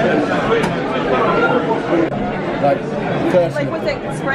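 Crowd chatter: many voices talking at once at a steady level, with no single voice standing out.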